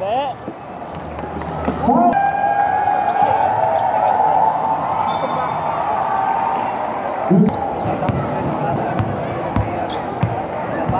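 A basketball game in a gymnasium: sharp bounces of the ball and shoe squeaks over loud crowd noise. The crowd noise swells about two seconds in and holds as one sustained shout for several seconds. There is a single heavy thump late on.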